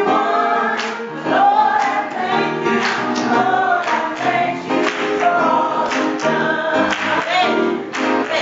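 Church congregation singing a gospel song, led by women on microphones, with keyboard accompaniment and hand clapping.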